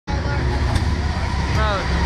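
A steady low machine rumble, with a young voice speaking briefly near the end.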